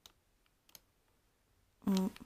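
A few faint clicks of the top buttons of a Tiger electric hot-water pot being pressed, one at the start and two close together under a second in.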